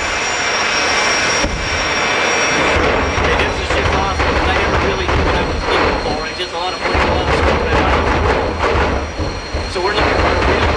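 Jet dragsters' turbine engines running at the starting line: a loud, steady rush with a high whine on top. Voices are mixed in from about three seconds on.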